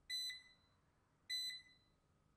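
Erabros RS1 robot vacuum sounding its Find my Robot locator beep: two short, high-pitched beeps about a second and a quarter apart, the signal that lets a stuck robot be found.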